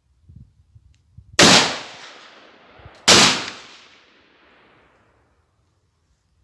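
Two single shots from a Mossberg MMR Pro AR-15 rifle in .223 Rem/5.56 NATO, fired about a second and a half apart, each a sharp crack followed by an echo fading over about a second.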